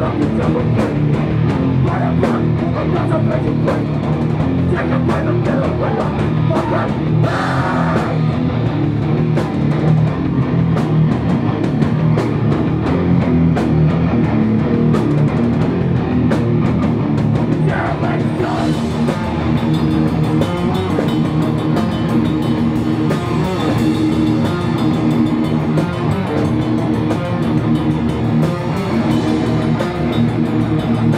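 Hardcore band playing live: electric guitars and drum kit, loud and unbroken throughout.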